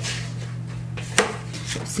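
Stiff kraft card from a hanging file folder rustling and sliding as it is handled, with one sharp tap a little over a second in.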